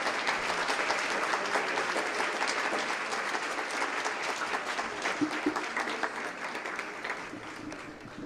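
Audience applauding, a dense patter of many hands clapping that slowly tapers off toward the end.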